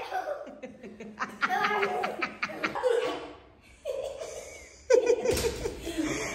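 People laughing in short bursts of repeated ha-ha pulses, with a brief lull before the laughing and voices pick up again near the end.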